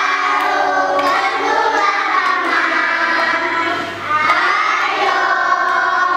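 A group of young children singing together loudly in unison, with a brief drop about four seconds in, as at a breath between lines.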